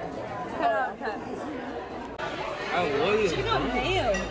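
Indistinct talking and chatter, with voices in conversation. The background changes abruptly about halfway through.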